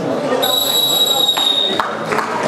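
A single steady, high-pitched signal tone, a whistle or beep held for just over a second, sounding over spectators' voices in the hall.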